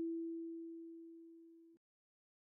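A single kalimba note, E4, ringing out and fading after its pluck, then cutting off abruptly near the end.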